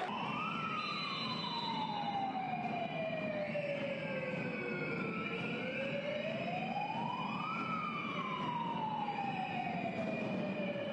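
A siren wailing: its pitch climbs quickly in the first half second, falls slowly for about four seconds, climbs again to a peak about seven and a half seconds in, then falls slowly once more.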